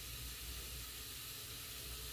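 Ground turkey sausage and diced onion frying in a cast-iron skillet, a soft steady sizzle.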